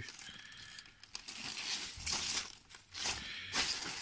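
Plastic bag and polystyrene packing peanuts crinkling and rustling as a boxed item is handled among them, in irregular bursts, the loudest about two seconds in and again about three and a half seconds in.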